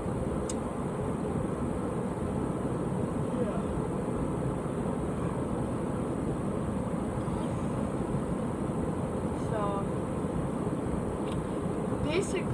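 A steady, even rushing background noise with no rhythm, with a brief faint voice sound about ten seconds in.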